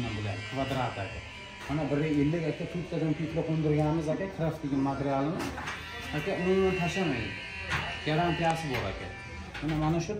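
A man talking in a language the recogniser could not transcribe, over a steady electrical buzz.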